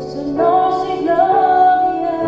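A woman singing a phrase of a worship song with piano accompaniment, her voice moving through several held notes.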